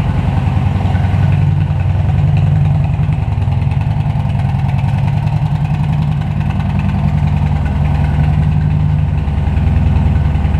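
Kawasaki Vulcan Nomad 1700 V-twin engine idling steadily.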